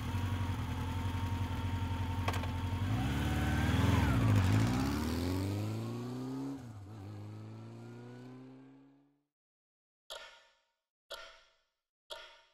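A motorcycle engine idling, revved briefly, then pulling away: its pitch rises through the gears with a shift about six and a half seconds in, fading into the distance after about nine seconds. Then three clock ticks about a second apart.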